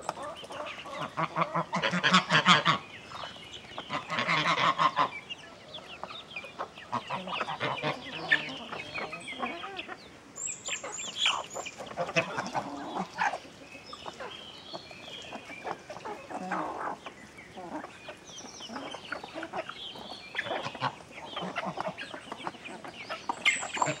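A flock of chickens clucking and calling while feeding, many short calls overlapping, with louder runs of calls about two seconds and four seconds in.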